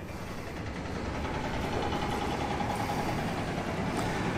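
Steady low engine rumble with a faint steady hum through the middle.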